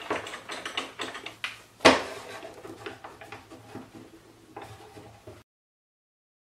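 Clamps being set and tightened on a plywood table saw top: irregular knocks and clatters of the clamps against the wood, with one sharp, loud knock about two seconds in. The sound cuts off suddenly shortly before the end.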